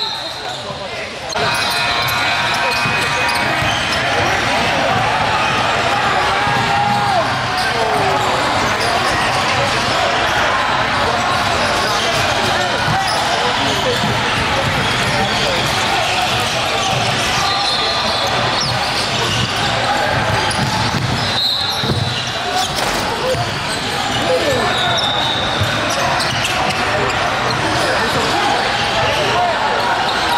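Live basketball game sounds: a ball dribbling and bouncing on the hardwood floor, sneakers squeaking, and the chatter of players and spectators in the gym.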